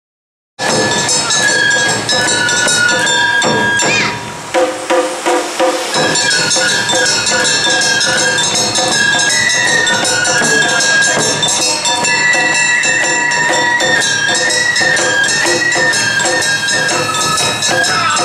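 Live Awa-odori festival band music: a flute melody over a steadily ringing hand gong and drums. About four seconds in, the sound drops and breaks up for a couple of seconds, a recording dropout.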